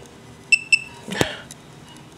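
Celluon laser projection keyboard giving short electronic key-click beeps as the projected keys are tapped, two in quick succession about half a second in. A short voiced word follows about a second in.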